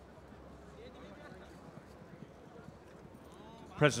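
Faint outdoor background with distant voices and a few soft knocks, then a man starts speaking near the end.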